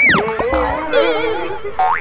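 Cartoon comedy sound effects over music: a quick whistle glide that rises and falls at the start, a warbling tone about a second in, and a sharp rising glide near the end.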